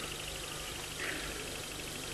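A pause between a man's sentences: only the steady hiss and faint low hum of an old, noisy recording.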